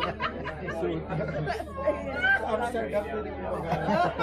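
Several people talking over one another in lively group conversation, with a steady low hum underneath.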